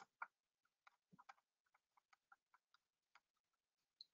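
Faint, irregular small clicks of a computer mouse, likely its scroll wheel, as image slices are paged through; the first two clicks are a little louder and a dozen or so weaker ticks follow.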